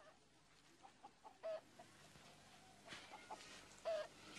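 Chicken clucking faintly: a few short, scattered clucks, the clearest about a second and a half in and just before the end.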